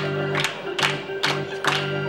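Electric organ playing a sports-arena style tune in sustained, changing chords, with sharp rhythmic beats about two and a half times a second.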